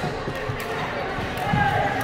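Doubles badminton rally on a wooden indoor court: sharp racket strikes on the shuttlecock and sneakers squeaking and scuffing on the floor, with voices in the background.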